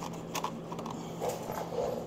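A few light clicks and knocks as hands handle the chrome highway board and its mounting bracket, over a faint steady hum.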